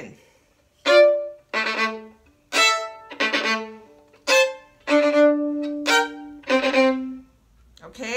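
Violin playing double stops slowly in about seven separate, firmly attacked bow strokes with short gaps between them, one chord held longer near the middle. This is slow practice of a semiquaver passage, each stroke bitten into the string at the frog.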